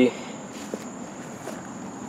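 Steady, high-pitched insect chorus outdoors, with a few faint clicks over a quiet background.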